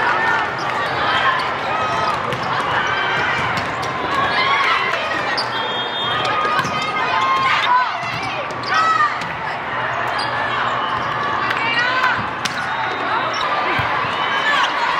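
Volleyballs being struck and hitting the floor in short sharp impacts, amid the overlapping shouts and chatter of players and spectators in a large hall.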